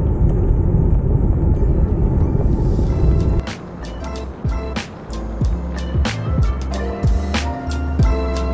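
Wind noise buffeting the microphone of a camera on a moving bicycle, cut off about three and a half seconds in. Music with a steady beat fades in just before the cut and carries on alone.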